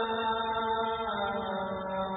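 A man's voice chanting an Islamic religious text in a slow, melodic line, holding each note long and stepping to a new pitch about every second.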